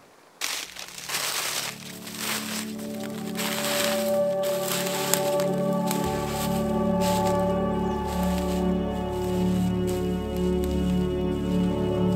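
Ambient background music of sustained, layered synth-pad tones building up from about two seconds in, with a deeper layer joining near the middle. Underneath, especially in the first couple of seconds, there is crackling and crunching: footsteps through frost-stiff dry bracken.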